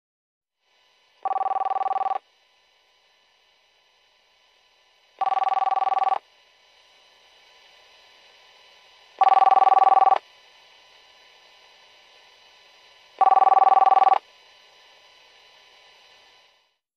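An electronic telephone ringing: four rings of about a second each, one every four seconds, each a pair of steady tones. The last two rings are louder than the first two.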